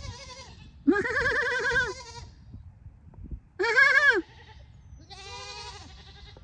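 Fainting (myotonic) goats bleating: a run of high-pitched, quavering bleats, almost squeak-like. The loudest and longest comes about a second in, a shorter one past halfway, and a fainter one near the end.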